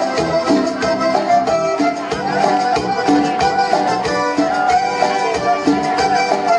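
Small live band playing a song, with a regular drum-kit beat under a sustained melody line.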